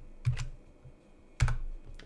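Computer keyboard keys being pressed as a colour code is entered: two quick key clicks about a quarter second in, then one louder key press about a second and a half in.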